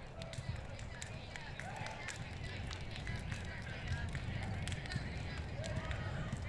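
Softball players slapping hands in a post-game handshake line: a quick, irregular string of sharp hand slaps, with voices chattering underneath.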